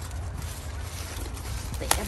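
Faint rustling of cauliflower leaves being handled and pushed aside, over a steady low rumble, with one short sharp click near the end.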